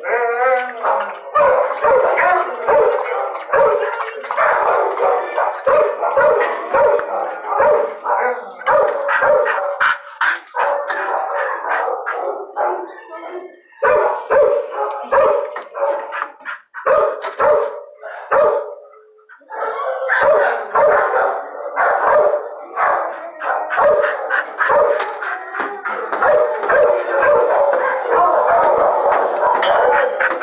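Dogs barking in an animal shelter's kennel block: a near-continuous run of barks from several dogs, with short lulls a little before and after the middle.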